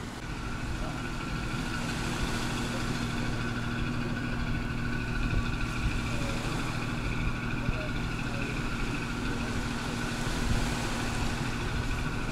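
Engines of a small cargo ferry running steadily close offshore: a constant, even hum that holds the same pitch throughout.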